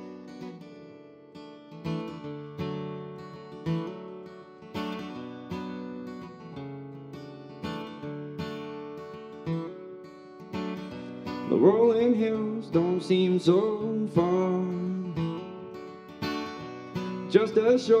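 Solo acoustic guitar playing a slow introduction, separate notes and chords ringing out one after another. About two-thirds of the way through, a man's singing voice comes in over the guitar.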